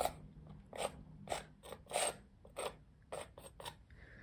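Metal palette knife scraping crackle paste across a canvas in short, gentle strokes, about one every half second to second, coming quicker near the end.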